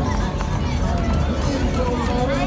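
People's voices talking over music with a heavy, steady bass.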